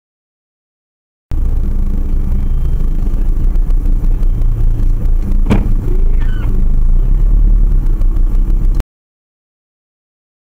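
Engine and road rumble from inside a car, picked up by its dashcam, with the city bus right alongside. The rumble starts about a second in and cuts off suddenly near the end. There is one sharp knock about halfway through.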